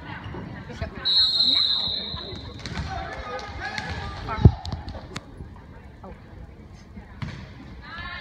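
Volleyball referee's whistle blown once about a second in, a single held high tone lasting about a second, to start the rally. A few seconds later comes one sharp smack of the volleyball being hit, with players and spectators calling out throughout.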